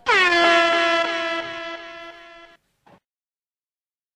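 DJ-style air horn sound effect: one long blast that dips in pitch at the start, then holds steady and fades out in steps, cutting off about two and a half seconds in. A faint short blip follows.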